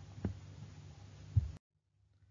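Faint low hum of the recording background with two soft low thumps, one about a quarter second in and one near a second and a half, then dead silence for the last half second.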